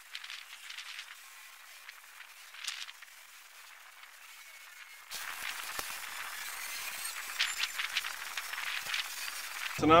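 Garden rake being dragged through loose straw: a run of scratchy, rustling strokes that starts about halfway through, after a quiet first half with only faint outdoor background.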